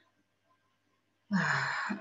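Near silence, then about 1.3 s in, one loud breathy sigh with a short voiced sound falling in pitch from the lecturer.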